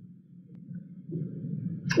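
Low, faint background noise of a hall recording during a pause, growing gradually louder, with a man's voice starting abruptly right at the end.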